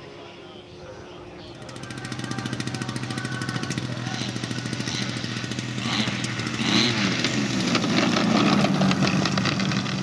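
Piston engines of a large twin-engine radio-controlled model warbird running steadily, growing louder from about a second and a half in and loudest over the last few seconds as the model comes in low to land.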